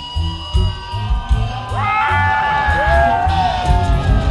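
Live rock band playing: drums and bass keep a steady pulse, and about two seconds in a high pitched line slides up and holds, bending again before the end.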